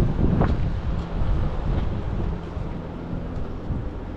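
Low, steady rumble of city street traffic, with wind buffeting the microphone. There is a louder swell about half a second in.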